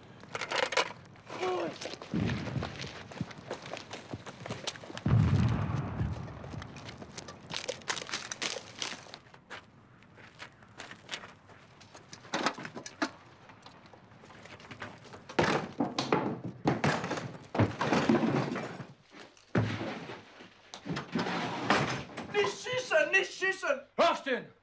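A series of thuds, knocks and clattering impacts, the heaviest about five seconds in, as armed soldiers close in on and enter a wooden hut. A short cry comes near the start and men's voices near the end.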